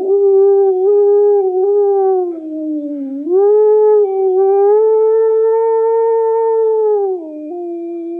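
A man's voice imitating a wolf howl: one long drawn-out howl that sags in pitch, swoops back up and is held steady. Near the end it drops to a lower, steadier tone.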